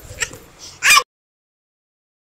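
A short high-pitched vocal call about a second in, its pitch curving, after the last word of a spoken thank-you. The audio then cuts off abruptly to silence.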